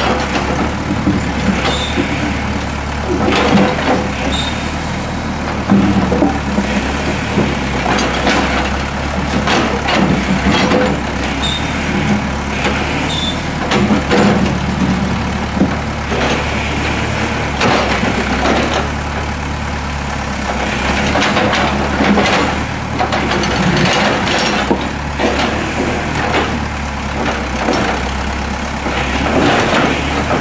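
Backhoe loader's engine running steadily while its rear bucket digs through broken concrete slab, with repeated knocks and scrapes of concrete chunks and the bucket scattered throughout.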